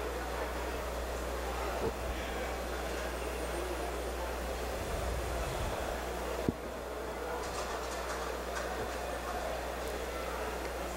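Steady outdoor background noise over a constant low electrical hum, broken by two brief knocks, about two seconds in and again about six and a half seconds in.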